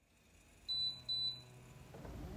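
Two short, high electronic beeps in quick succession, about half a second apart, as a logo sound effect.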